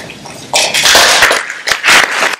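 Loud, irregular rustling and crackling noise starting about half a second in, in uneven bursts.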